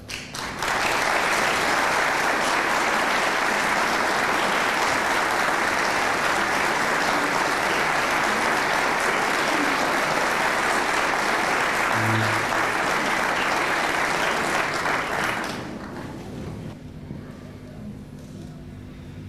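Audience applauding, starting about half a second in, holding steady, and dying away near the end.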